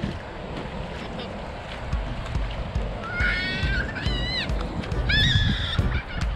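A child shouting in three high-pitched, drawn-out cries in the second half, over a low rumble of wind and handling on the microphone.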